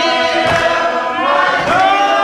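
Group of voices singing a gospel song in a church, holding long notes that slide up in pitch near the end.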